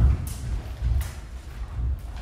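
Fencers' feet moving and stamping on a wooden hall floor in uneven low thuds. There are two short, sharp clicks, about a quarter second in and again at about one second.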